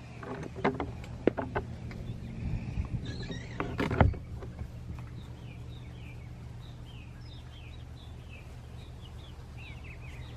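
Knocks and clatter of a wooden chicken-coop door and its latch being handled, the loudest knock about four seconds in. Then a run of short, high, falling bird chirps, over a steady low hum.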